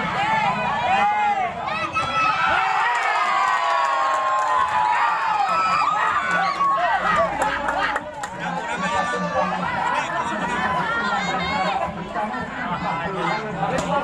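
Crowd of spectators shouting and chattering, many voices overlapping.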